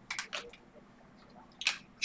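Glossy Panini Select football cards sliding against each other as a hand flips through the stack: two quick swishes near the start and one more near the end.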